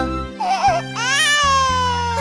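A voiced cartoon baby crying: one long wail that starts about a second in and slowly falls in pitch, over children's-song backing music. A brief warbling sound comes just before it, about half a second in.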